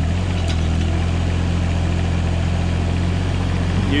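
Kubota U17 mini excavator's diesel engine running steadily under load, a low even hum, as the machine raises its boom to level itself on the trailer ramps.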